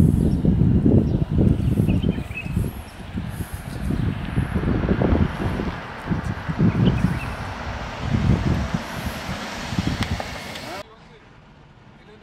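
Wind buffeting the microphone in low, gusty rumbles, with a car passing on the street about halfway through. The sound cuts off suddenly shortly before the end.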